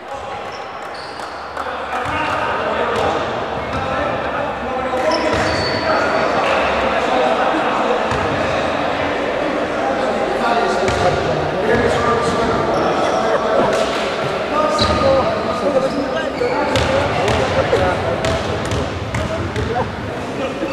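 Basketball bouncing on a wooden gym floor among players' and spectators' voices, with several sharp knocks between about 5 and 17 seconds.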